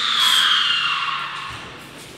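A shrill, breathy scream, loudest at the start, sliding slowly down in pitch and fading away over about a second and a half.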